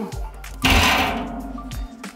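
Metal deflector plate set down inside a 55-gallon drum smoker: a sudden metallic clang about half a second in that rings on and fades over about a second, over background music.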